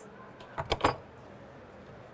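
A few short metallic clinks and clatter about half a second to a second in, as the clamp assembly coupling a fire pump end to its drive assembly is taken off and handled.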